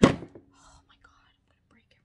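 A single loud thunk right at the start, an object knocking against something hard as a product is picked up or set down, dying away quickly. It is followed by faint handling rustles.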